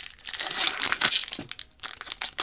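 Foil wrapper of a trading-card hobby pack being torn open and crinkled by hand, a quick run of sharp crackles, densest in the first second and thinning out after.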